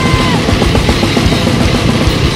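Loud, fast hardcore punk studio recording: distorted electric guitar and a rapidly played drum kit. A held high note bends down about a third of a second in.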